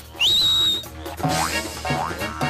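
Cartoon sound effects: a short high whistle that rises, then holds. About a second in, springy boing effects set in over music, repeating about every 0.6 seconds to match a kangaroo's hops.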